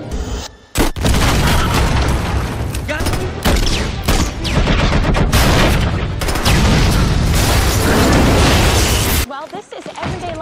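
Film battle sound: a sharp shot about a second in, then a grenade explosion and gunfire with dense, loud blasts and rumble. It cuts off abruptly near the end.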